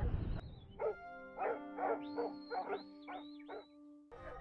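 A sheepdog barking repeatedly, about six barks in two and a half seconds, over sustained background music notes.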